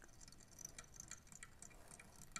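Near silence with faint, scattered small ticks as tying thread is wrapped around a fly hook with a bobbin.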